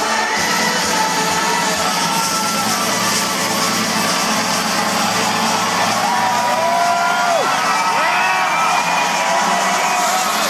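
Loud electronic dance music from a festival DJ set, with a large crowd cheering and whooping over it.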